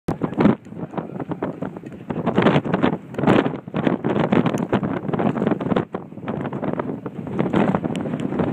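Gusty wind buffeting the microphone, a rushing noise that swells and drops with each gust.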